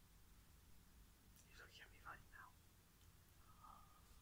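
Near silence: room tone, with a few faint whispered sounds in the middle.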